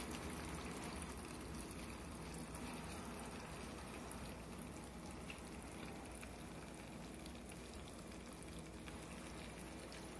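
Faint, steady sizzling and bubbling of caramel-braised pork belly in a hot clay pot.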